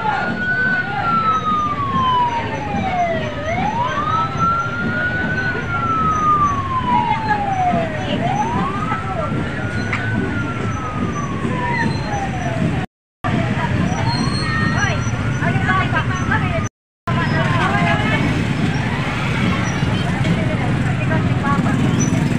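Police pickup's siren wailing, a slow rise and fall about every five seconds, over the low running of motorcycle engines and street crowd noise.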